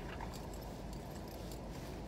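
Car engine idling, heard from inside the cabin as a steady low hum, with a few faint light clicks over it.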